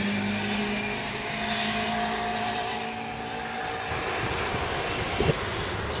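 Road traffic: a motor vehicle's engine running steadily with tyre noise as traffic passes on the street, the hum easing off about halfway through and rising a little again near the end.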